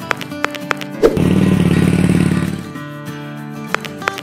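Light background music, with a louder, rough noise swelling in about a second in and fading out by about three seconds.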